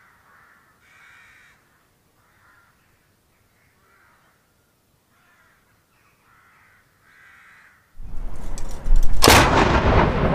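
Crows cawing faintly, a call every second or so. About eight seconds in a loud rushing noise begins. A second later a field gun fires a single ceremonial shot, the loudest sound, with a rolling echo after it.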